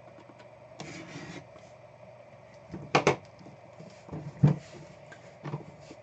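A metal briefcase being handled on a tabletop: a short scrape about a second in, then three sharp knocks as the case is turned over and set down flat, the loudest about three seconds in.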